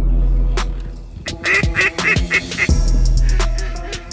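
A duck call blown in a quick run of about five quacks, the usual signal before a bird is thrown for a retriever, over background music with a steady beat.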